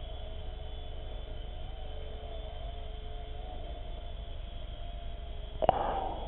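Xieda 9958 micro RC helicopter hovering: a steady electric motor and rotor whine that wavers a little in pitch. A single sharp knock near the end.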